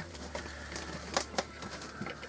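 Quiet handling noise from a small computer case being taken apart with a screwdriver, with two sharp clicks a little over a second in, over a low steady hum.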